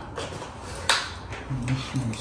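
Quiet room sound with a couple of light clicks, the sharpest about a second in, and a faint voice near the end.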